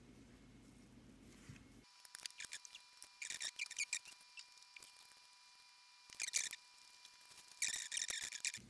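Painter's tape being peeled off a phone's edge, crackling in short runs: one stretch about two seconds in, a brief one about six seconds in, and another near the end. A faint steady high tone sits underneath from about two seconds in.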